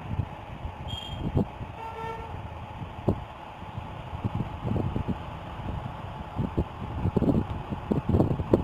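Steady background hum with a brief, faint horn-like toot about two seconds in and scattered soft knocks.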